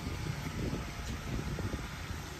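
Steady low rumble of outdoor background noise, with no distinct event.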